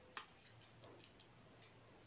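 Near silence broken by one small sharp click just after the start, then a few faint ticks: small metal earrings being handled and worked off their card by fingertips.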